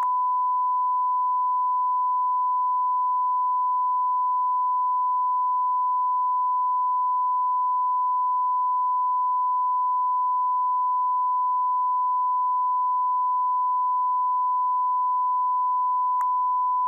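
Broadcast line-up tone: one steady, unbroken 1 kHz sine tone sent with a network feed's test slate, the signal of an idle feed with no programme on the line.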